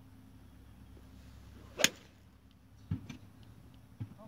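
A golf club swung and striking the ball: a faint swish, then one sharp crack a little under two seconds in. Two fainter knocks follow about a second later.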